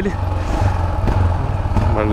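Yamaha XT660's single-cylinder four-stroke engine running at low revs, a steady thumping rumble, as the bike slows to the curb.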